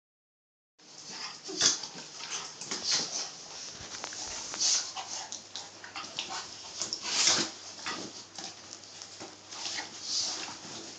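Two dogs, a flat-coated retriever and a basenji, play-fighting with open mouths (bitey-face): a run of short, irregular noisy bursts from their mouths and bodies, starting just under a second in, with the loudest near a second and a half in and again about seven seconds in.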